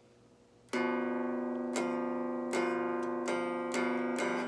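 Guitar chord fingered at the 2nd fret of the A string and the 3rd fret of the D string, strummed slowly about five times from about a second in, each strum ringing on into the next.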